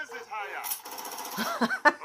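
Film trailer soundtrack played back: a brief voice, then a burst of hissing noise and a quick run of sharp knocks in the last half second.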